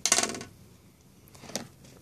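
A sharp clink of small hard cosmetic containers being handled and set down, ringing for about half a second, then a lighter click about a second and a half in.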